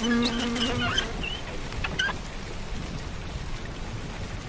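A housefly buzzing in a steady hum that stops about a second in, over steady rain.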